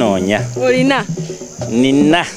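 Voices making drawn-out calls that rise and fall in pitch, in three short stretches, over a steady high-pitched chirring of crickets.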